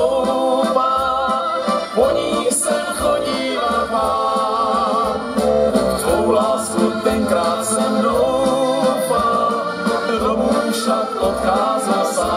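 Live band music: two accordions and an electronic keyboard playing a slow, romantic song.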